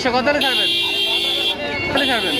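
A vehicle horn sounding twice, as a steady blast of about a second from half a second in and again just before the end, over the voices of a crowd.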